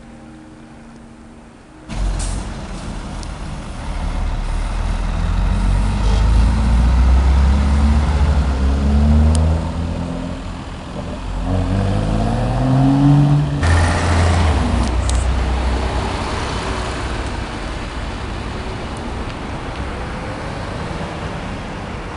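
A vehicle engine accelerating hard, its pitch climbing in repeated rising sweeps as it goes up through the gears, over steady city traffic noise. It starts suddenly about two seconds in and eases into a steady traffic hum for the second half.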